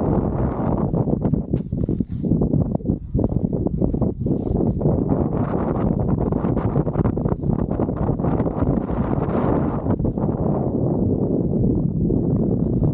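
Snowboard sliding and carving over soft snow: a continuous, uneven scraping rush, with wind buffeting the microphone.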